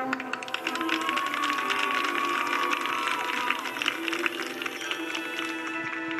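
Marching band music played back from a VHS tape: a passage of rapid, dense percussion strikes over held tones, with a faint tone sliding up and back down in the middle.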